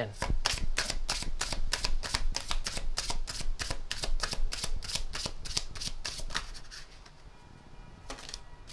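A tarot deck being shuffled by hand, cards flicking against each other in a quick, even patter of several snaps a second that dies away about six and a half seconds in.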